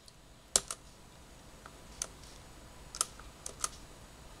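A handful of sharp, isolated clicks from a laptop's controls, about six, irregularly spaced, some in quick pairs, over a faint hiss.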